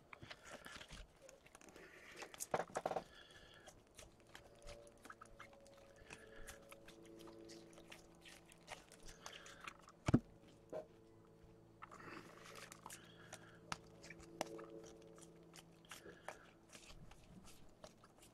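Faint rustling, crinkling and small clicks of trading cards being handled, shuffled and stacked by hand on a tabletop, with one sharper knock about ten seconds in.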